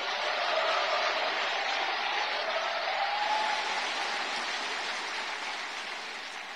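Audience applauding: steady, dense clapping from a large crowd that swells up just before and slowly tapers off.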